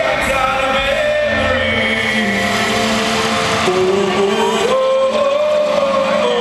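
Live concert music in an arena: a singer holds long notes that slide in pitch over the band, heard from the seats.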